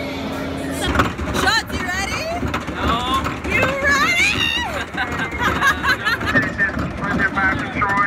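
Riders screaming and laughing on a moving thrill ride, over a loud rushing rumble from the ride in motion. It starts about a second in, with high gliding shrieks for the next few seconds.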